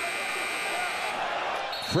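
Basketball arena broadcast sound: crowd noise with a steady high tone through the first half and a short, higher squeak near the end.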